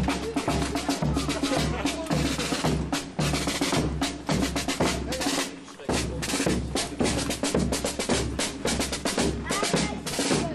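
Marching band drum section playing a street march cadence: rattling snare drum rolls and rimshots over a steady bass drum beat, with a short break a little past halfway.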